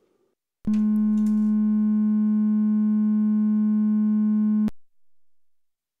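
Behringer 2600 synthesizer's VCO2 sine wave output: one steady tone of about 210 Hz. It starts about two-thirds of a second in, holds for about four seconds and cuts off abruptly.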